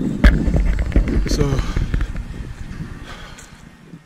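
Rumbling buffeting noise with sudden bumps on a handheld camera's microphone, loudest just after the start and fading away over the next few seconds; a man says a short "So..." in the middle of it.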